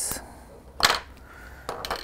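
Small fly-tying scissors snipping once, a short, sharp metallic click about a second in, as stray fibres are trimmed from the finished nymph.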